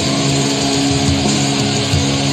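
Rock music with electric guitar played along to the song's recording; a chord rings steadily through most of it.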